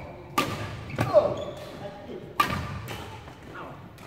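Badminton rackets striking a shuttlecock during a rally: several sharp cracks, the loudest just past a second in, each ringing briefly in a large hall.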